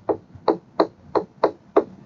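A stylus tapping on a tablet's screen as handwriting is put down: about eight short, sharp clicks, roughly three a second.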